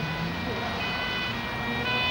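Ambulance two-tone siren sounding, switching between its two notes.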